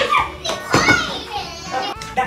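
Young children's voices, several calling out over one another, with one loud high-pitched cry about three-quarters of a second in.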